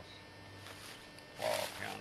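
A person's short, loud, rough vocal burst about a second and a half in, after a quiet stretch.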